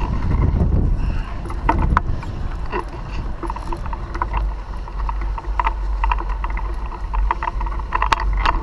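Wind rumbling on a moving action camera's microphone, with light, regular ticks about two to three a second.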